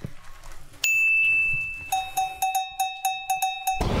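Electronic intro jingle of a short video: a single bright, held ding about a second in, then a quick run of short pitched blips, about seven a second, cut off by a sudden rush of noise near the end.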